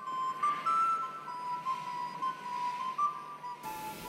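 Wooden recorder playing a slow, high melody of long held notes.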